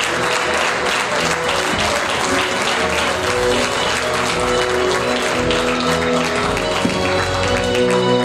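Audience applauding while music plays, with held notes and a bass line that comes in about three and a half seconds in.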